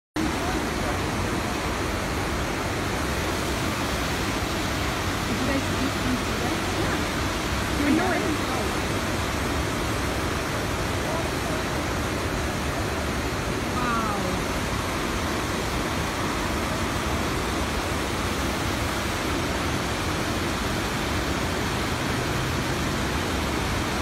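Steady rushing of a flooded river churning over rocks, an even noise with no let-up, with a few faint voices now and then.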